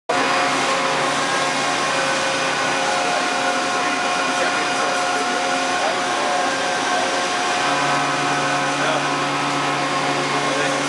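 Steady din of running machine-shop machinery, CNC machining centres: a constant hum with several steady whining tones. A lower hum joins about three-quarters of the way in.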